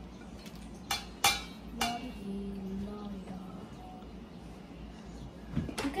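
A plate and a silicone spatula clinking and scraping against a stainless steel mixing bowl as chopped vegetables are pushed off the plate into it. There are three sharp clinks about a second in and another just before the end.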